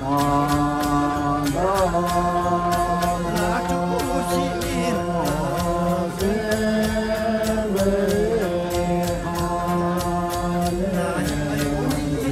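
Chanted singing in long, held notes that change pitch every second or two, over a steady ticking beat.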